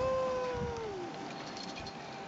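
A young child's high-pitched, drawn-out call, held on one note and dropping away about a second in.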